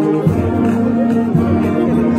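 Brass band playing a hymn in slow, held chords that change about once a second.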